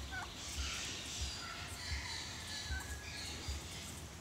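Domestic turkey tom calling faintly and intermittently outdoors, with chickens close by and a steady outdoor hiss behind.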